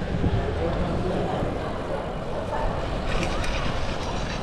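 City street sound heard from a moving road bike: steady wind on the microphone over passing traffic. About three seconds in, light clicking and rattling starts as the bike rolls onto paving tiles.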